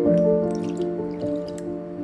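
Background music, with a little water poured from a glass onto thick Greek yogurt in a bowl. It drips and splashes in short bits during the first second.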